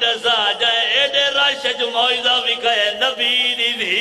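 A male zakir's mournful chanted recitation, the voice wavering and sliding in long melismatic phrases over a steady low held note.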